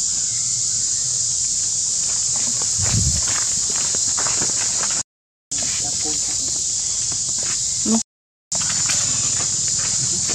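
A steady, high-pitched drone of insects, with faint rustling in dry leaves, a dull thud about three seconds in and a short rising squeak from a monkey near the end. The sound cuts out briefly twice.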